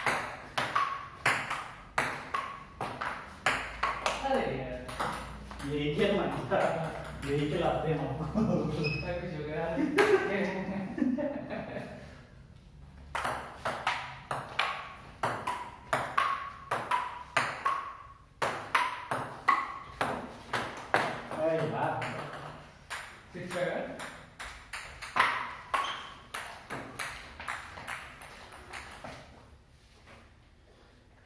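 Table tennis rally: the ball clicking back and forth off rubber paddles and bouncing on a wooden table, a quick series of light ticks several times a second. There is a short break about twelve seconds in before play resumes.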